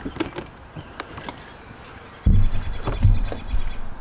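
The rear door of an Alu Cab canopy camper being unlatched and opened: a few light clicks of the latch and handle, then, from about halfway, a loud low rumble for nearly two seconds as the door swings up on its gas springs.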